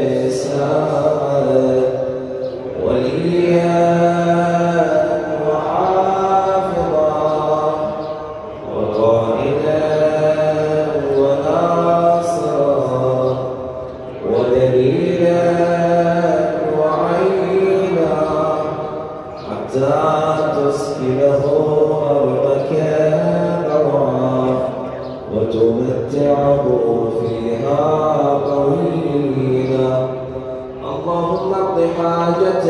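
A man's voice chanting a devotional recitation in long, melodic, drawn-out phrases, each about five to six seconds long, with short breaks between them.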